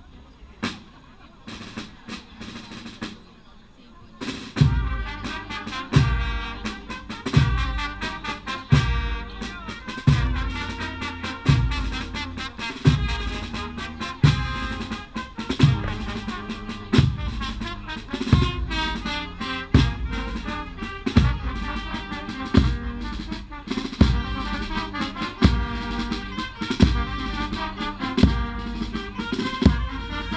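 Procession marching band of brass and drums playing a slow march. After a few scattered drum strokes, a heavy bass-drum beat comes in about four seconds in and falls about every second and a half, with snare drums and sustained brass chords over it.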